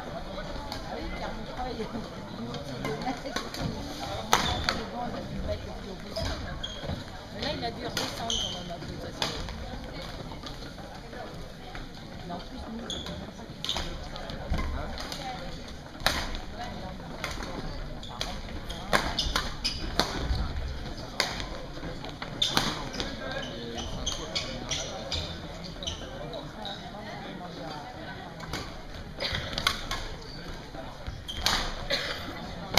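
Badminton rackets striking a shuttlecock during a rally: sharp smacks at irregular intervals, over the steady chatter of a sports hall.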